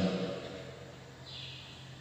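A short pause in speech: faint church room tone with a steady low hum, the echo of the last words dying away at the start. A faint high hiss comes in during the last half second or so.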